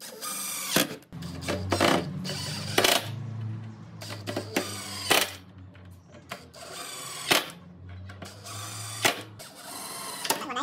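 Cordless driver driving screws into steel door-style hinges on a wooden frame, running in repeated short, sharp bursts.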